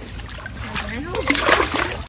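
Water splashing as fish flap in a mesh fishing net, in a few short splashes in the second half, with voices talking in the background.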